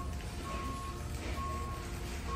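An electronic alarm beeping a single steady tone, each beep about half a second long and coming roughly once a second, over a low steady background hum.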